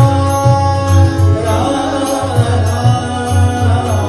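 Live devotional bhajan singing: a male voice sings with tabla and harmonium accompaniment, the tabla's deep bass strokes pulsing in a steady rhythm under the melody.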